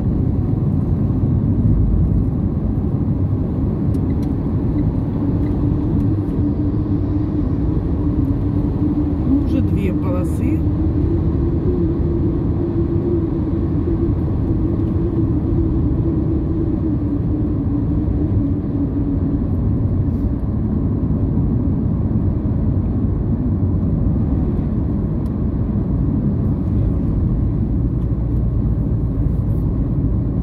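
Car road and engine noise heard inside the cabin while driving at highway speed: a steady low rumble, with a faint hum that rises a little and fades again in the middle.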